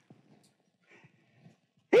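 Near silence: a pause in a man's speech, with a faint, brief sound about a second in. His voice comes back just at the end.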